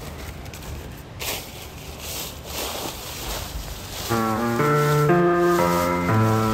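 Outdoor rustling ambience with no steady tones, then about four seconds in a piano comes in playing chords and a melody. The piano is MIDI piano run through tape-effect processing for a lo-fi sound.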